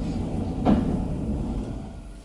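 1993 HEFA roped hydraulic elevator car riding up, heard from inside the car as a steady low rumble with a single knock under a second in. The rumble fades near the end as the car slows at the top landing.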